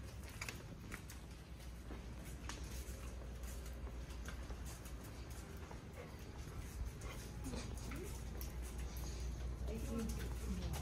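A dog's nails and shoes clicking and patting lightly on a hard store floor as they walk, over a steady low hum. Faint voices come in near the end.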